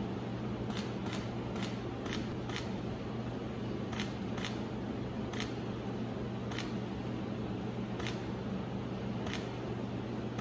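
A camera shutter firing repeatedly: about eleven single clicks, a quick run of five in the first two and a half seconds, then spaced a second or so apart. A steady low hum runs underneath.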